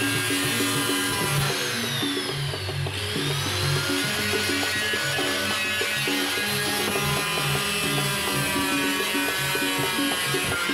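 Background music, with the high whine of a Modern angle grinder cutting into a plastic water-cooler jug underneath it. The grinder's pitch sags for a second or so as the disc bites into the plastic, then climbs back.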